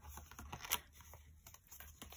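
Faint rustle and light clicks of a die-cut cardstock card being flexed and opened in the hands, with one sharper tick a little under a second in.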